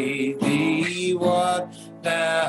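A man singing a slow hymn to his own acoustic guitar strumming, holding long notes, with a softer moment near the end.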